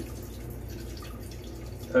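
Neem oil, surfactant and water sloshing quietly in a plastic jug that is swirled by hand to emulsify them, over a low steady hum.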